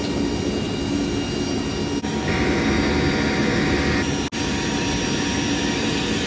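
Steady cabin drone of a C-130 Hercules's four turboprop engines heard from inside the cargo hold in flight, with constant engine tones running through it. It briefly cuts out twice.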